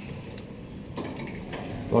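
A few faint mechanical clicks over a low steady hum inside a traction elevator car as a floor button is pressed.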